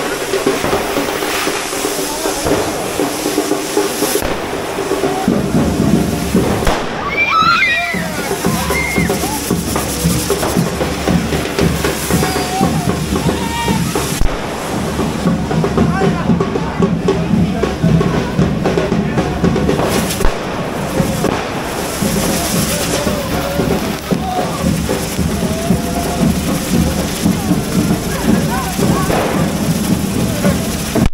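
Hand-held corrafoc fireworks hissing and crackling amid a loud crowd of voices, with music playing throughout.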